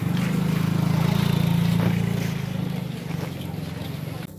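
A small motorcycle's engine running as it passes close by, a steady low hum that fades from about three seconds in as it pulls away.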